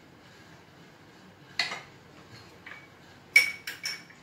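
Cutlery clinking against bowls and plates while fruit salad is mixed: about five sharp clinks in the second half, some with a short metallic ring. The loudest comes about three and a half seconds in.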